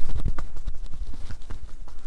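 Percussive massage strokes: two hands held palms together striking a person's back through a T-shirt, making a quick, uneven run of soft claps and pats.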